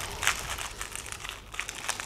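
Plastic packaging crinkling and crackling irregularly as gloved hands handle it.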